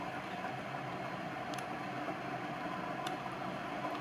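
Steady mechanical background hum of a workshop, like a fan or ventilation unit running, with two faint clicks from the small pressure transducer being handled.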